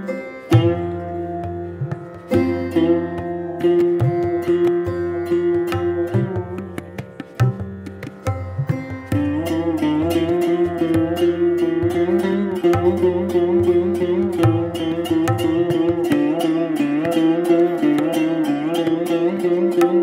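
Sarod played with tabla accompaniment in Hindustani classical style. Separate plucked notes with sliding pitch over tabla strokes thicken, about nine seconds in, into a denser, continuous stream of notes with the tabla playing steadily beneath.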